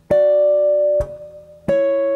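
Clean electric guitar playing sixth intervals as two-note double stops, descending the neck: one dyad plucked at the start and held about a second, then a second, slightly lower dyad plucked near the end.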